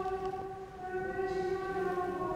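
Slow church music of long, steady held chords, the chord changing about a second in. A faint rustle of paper comes near the start.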